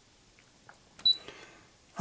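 A few faint clicks, then a sharp click about a second in with one short high beep, typical of a key press on the Brother Innovis 2800D's control panel.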